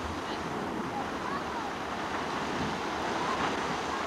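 Crystal Geyser, a cold-water geyser driven by carbon dioxide, erupting: a steady rush of water from the tall jetting column.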